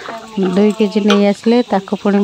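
A woman talking, words the transcript missed, with a brief stirring scrape of a serving spatula in a steel pot of curry at the start.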